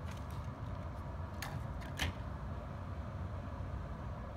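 A steady low background rumble with a few short, light clicks and taps from makeup tools being handled, the clearest about a second and a half and two seconds in.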